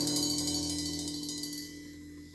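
Recorded music played through a pair of AudioFlex AX-1000 floor-standing speakers, its last held notes steadily fading away.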